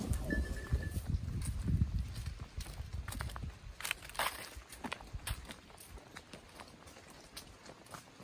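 Cattle moving on a dirt path, with a low rumble and knocks, then footsteps crunching on dry leaves along a dirt trail, with one louder crackle about four seconds in.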